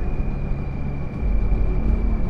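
Motorcycle riding noise heard from the moving bike: a steady engine and wind rumble that grows stronger about a second in, with music playing underneath.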